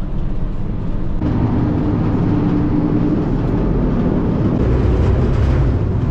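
Passenger ferry's engines running with a steady low drone. A broad rushing noise grows louder about a second in, and a faint hum joins it for a couple of seconds.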